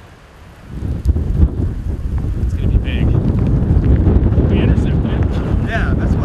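Strong wind buffeting the microphone: a heavy, gusty low rumble that starts suddenly about a second in and keeps on.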